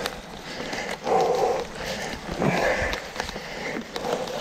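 Mountain biker breathing hard while climbing, with two loud heavy breaths about a second and a half apart and fainter breaths between. Short clicks and rattles of the bike going over roots sound through it.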